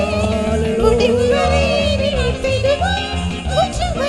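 A song: a singer holding long, wavering notes over instrumental backing with a steady, repeating bass beat.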